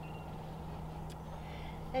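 A steady low background rumble with a constant low hum under it.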